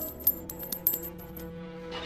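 Coins dropping onto the ground: a quick run of sharp metallic clinks with a bright ring over the first second or so, over steady background music.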